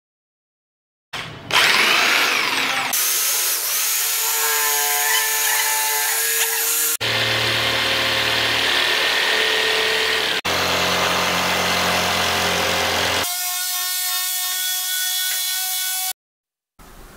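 Black & Decker jigsaw cutting MDF board: a steady motor whine over the noise of the blade sawing through the board, starting about a second in. The sound changes abruptly several times where separate stretches of the cut are spliced together.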